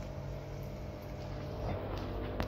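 Steady low hum of running aquarium pump equipment, with faint steady tones under an even background noise.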